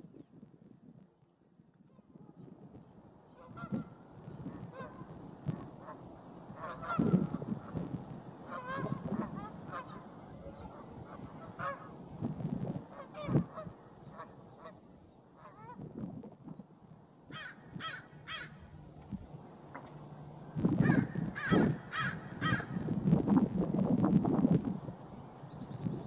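Waterfowl calling repeatedly: short calls at irregular intervals, then a quick run of three and a run of four in the last third.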